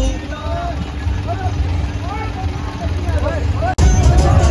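Tractor engine running with a steady low rumble while men shout and call out over it. The sound breaks off suddenly near the end.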